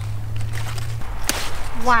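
A large mustard green leaf snapped off its plant by hand: one crisp snap about a second in, after a low steady hum in the first second.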